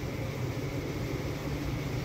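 Steady low mechanical hum with an even hiss from the ventilation of an enclosed rabbit barn, whose exhaust fans draw air through a water-cooled pad.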